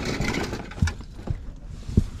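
Hands rummaging through folded T-shirts in a cardboard box, with fabric and cardboard rustling against a steady low outdoor rumble. There are a few soft knocks, and a sharper one comes at the end.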